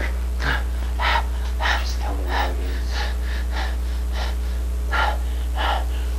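A person panting and gasping in short, quick breaths, nearly two a second, over a steady low hum.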